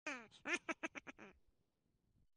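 Short comic sound effect on the show's title card: one falling pitched squawk, then about six quick squawky syllables in a row that fade out about halfway through, like a cartoon duck or laugh.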